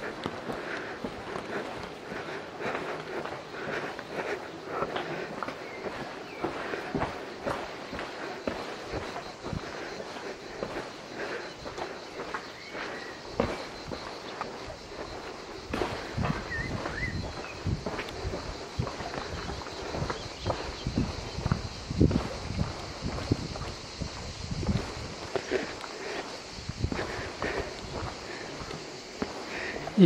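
Footsteps of a person walking along a paved village lane, an irregular run of scuffs and taps that turns into heavier thuds about halfway through. A steady high hiss runs underneath.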